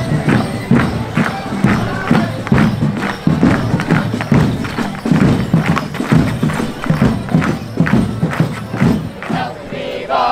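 Morris dance tune on melodeon and band, with the regular sharp clack of the dancers' wooden sticks striking together and the jingle of their leg bells.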